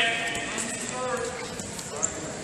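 A voice shouting in an echoing sports hall, loudest right at the start, with a second shorter call about a second in.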